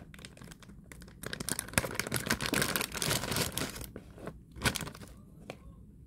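Clear plastic bag crinkling and rustling as it is pulled open and handled, loudest in the middle, with a single sharp tap about three-quarters of the way through.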